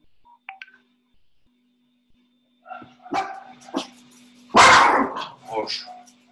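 A dog barking several times, with the loudest bark about halfway through, over a faint steady hum.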